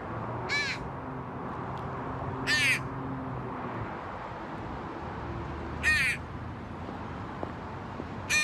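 A crow cawing three times, single short harsh caws about two to three seconds apart, over a low steady background hum.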